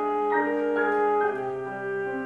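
Alto saxophone playing a jazz melody in a reverberant hall, moving note to note about every half second, with several pitches sounding together behind the melody.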